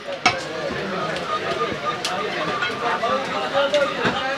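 Background chatter of several voices in a busy meat market, with one sharp knock about a quarter second in and lighter clicks and knocks scattered through.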